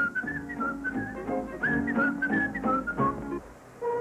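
Music with a high, warbling whistled melody over a lower accompaniment, breaking off briefly near the end.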